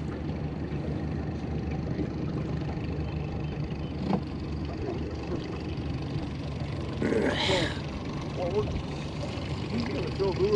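Boat outboard motor running steadily under way, a low even drone. A brief hiss cuts in about seven seconds in.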